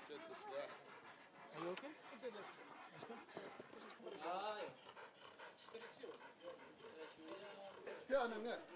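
A dog panting hard with its tongue out, cooling down after a running race, among people's voices.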